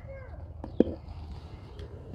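Quiet outdoor background with a low steady hum, broken by two light clicks a little before the middle, the second one sharper.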